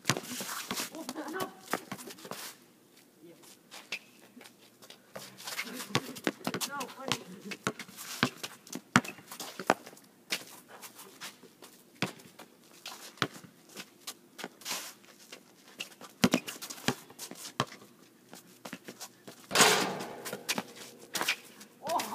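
Basketball bouncing on an outdoor asphalt court in a one-on-one game: irregular sharp bounces with footsteps on the court, and a louder rush of sound near the end.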